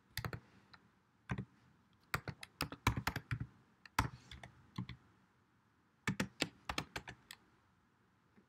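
Typing on a computer keyboard: irregular bursts of keystroke clicks, with a pause of about a second past the middle.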